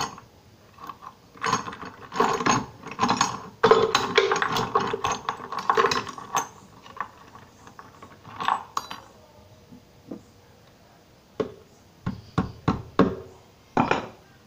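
Steel roller chain clinking and rattling as it is handled and shifted on a concrete floor while being shortened, in a dense run in the first half. It is followed by a few separate sharp metal knocks near the end.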